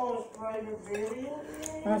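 Forks clicking lightly against dishes a few times, under one long drawn-out voice sound that dips and then rises in pitch.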